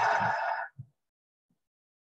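A person exhaling in a long, breathy sigh out through the mouth, which ends under a second in; after it there is near silence.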